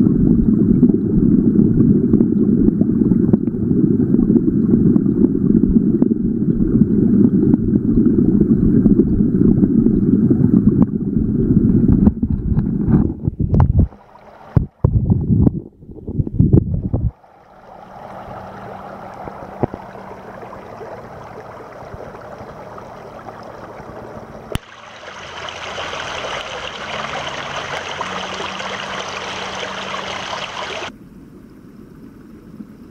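A rushing creek heard through a waterproof camera's microphone held underwater: a loud, muffled low rumble. A little before halfway there are a few broken splashy bursts as the camera comes up through the surface. Then the stream's rushing water is heard in open air as a brighter hiss, which grows louder after a sudden change near the end.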